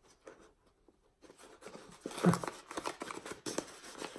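A sealed mailing bag being worked open by hand: after about a second of near quiet come scattered faint rustles and small clicks.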